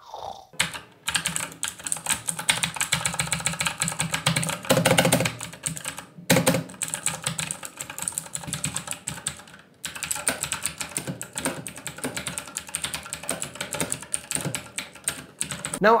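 Cosmic Byte GK-16 mechanical keyboard with Outemu Blue clicky switches, typed on quickly: a dense, loud run of sharp key clicks with short pauses about one, six and ten seconds in.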